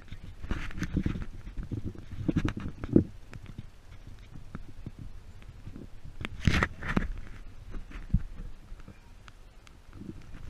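Irregular knocks, taps and clatter on a fibreglass boat as anglers fight hooked fish on bent rods: footsteps and tackle bumping the deck and console. The sounds are densest in the first three seconds and again about six and a half seconds in.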